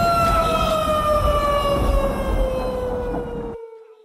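A sustained siren-like electronic tone from the show's closing sound, gliding slowly down in pitch over a low rumble. The rumble cuts off suddenly about three and a half seconds in, and the tone fades out just after.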